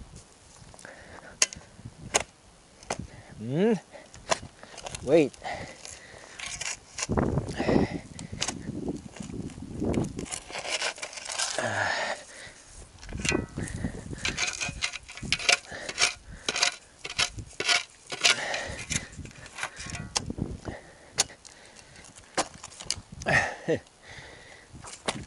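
Steel shovel blade repeatedly scraping and chopping into gravelly soil, with sharp scrapes and clinks as it strikes stones and lifts earth.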